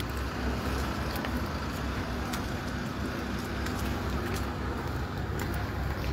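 Steady low rumble of outdoor background noise, like distant vehicle traffic, with a few faint ticks.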